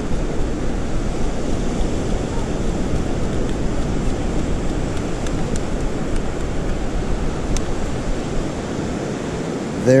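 Steady wind and ocean surf noise on an open beach, with a few faint clicks.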